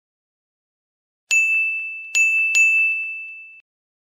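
A bell-like chime sound effect for a logo reveal: three bright dings at the same high pitch, starting about a second in, the last two close together, ringing on and then cutting off suddenly.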